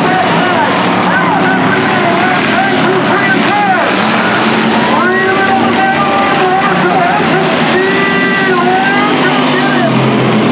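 Several dirt-track cruiser race cars' engines running hard around the oval, their pitch rising and falling as the cars go through the turns.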